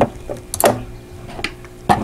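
A few separate sharp clicks and knocks, about three in two seconds, from hands handling things at a domestic sewing machine; the machine is not stitching.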